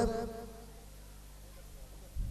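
An amplified man's voice trails off with a short echo, leaving a low steady electrical hum from the sound system.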